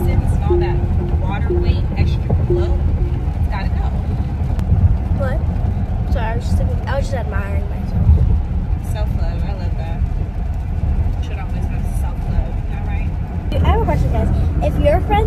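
Car cabin road noise, a steady low rumble from a car being driven. A short tone repeats about twice a second and stops about three seconds in. Faint, indistinct voices come and go over the rumble.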